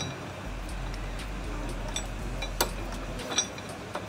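Faint scattered metallic clicks and ticks as a long-shaft T8 screwdriver is turned by hand, running a long engine screw into the handlebar end to mount a lever guard.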